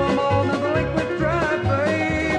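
Instrumental break of a 1971 country duet recording: plucked-string country band over a steady bass beat, with a lead melody that slides in pitch.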